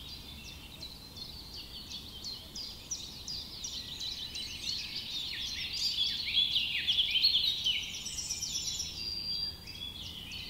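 A chorus of many small songbirds chirping at once, a dense tangle of quick, high, mostly down-sweeping chirps that grows busiest and loudest past the middle.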